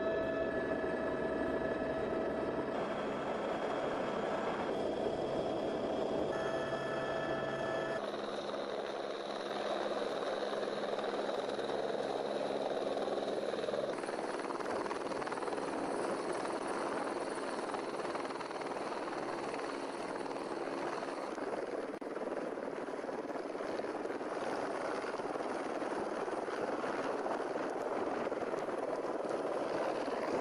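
Helicopter running: steady turbine whine and rotor noise. The tone and balance shift abruptly several times, at about 3, 8, 14 and 21 seconds in.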